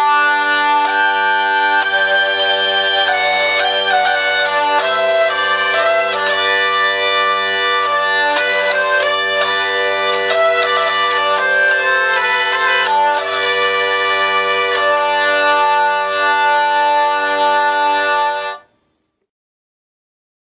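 Hurdy-gurdy played with its harmony string switched on: steady drone tones sound under a melody, with a second line of notes from the optional third row of harmony keys. The playing stops abruptly near the end.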